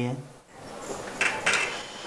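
A few short, light knocks and rattles after a man's speech stops early on.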